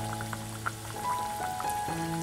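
Soft background music with long held notes over the light crackle of semolina fritters deep-frying in hot oil.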